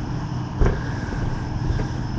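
Low, steady rumble of vehicle engines idling on the street, with a single soft thump a little over half a second in.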